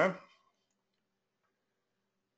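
A man's voice finishing the word "huh?" in the first moment, then near silence with only a very faint steady hum.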